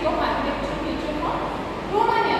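A woman speaking, lecturing in a continuous voice with rising and falling pitch.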